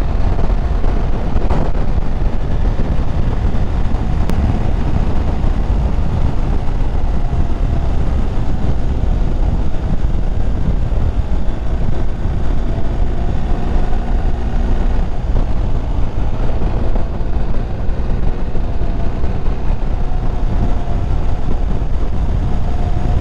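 BMW motorcycle being ridden at road speed: a steady, loud rush of wind on the microphone over the running engine, with a faint engine tone that comes and goes.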